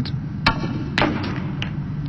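Snooker cue tip striking the cue ball with a sharp click about half a second in, followed by two more clicks of ball contact as the swerved cue ball runs down the table toward the reds.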